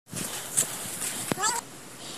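Footsteps and rustling on a leaf-littered forest path, with a brief call of quick notes stepping upward in pitch about one and a half seconds in.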